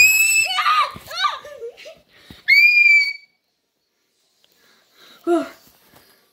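A child's high-pitched screams: one at the start and a second about two and a half seconds in, with gliding vocal noises between them, then a short vocal sound near the end.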